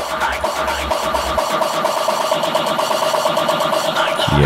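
Techno track in a breakdown: the kick drum drops out, leaving a steady synth drone with fast, ticking high percussion. The bass stops about a second and a half in.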